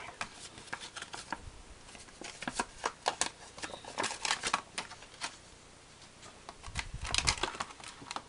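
Clear plastic blister packaging and a cardboard box being handled as the contents are pulled out: irregular crackles and clicks, with a short lull about five and a half seconds in and a louder flurry around seven seconds.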